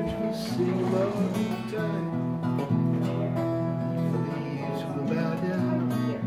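An acoustic guitar played in held chords that change every second or so. A man sings "the day" just after the start, then the guitar carries on alone.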